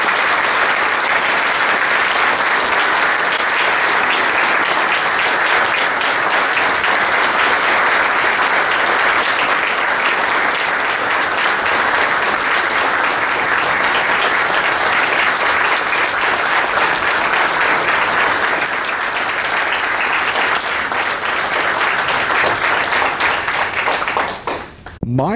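A roomful of people applauding, a steady clapping that lasts the whole time and thins out near the end.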